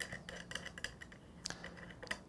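Faint, scattered light clicks and taps of small insulated crimp ring terminals being handled and set down on a tabletop.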